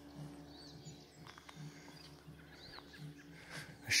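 Faint high bird chirps, two short arched calls about two seconds apart, over a low steady outdoor hum.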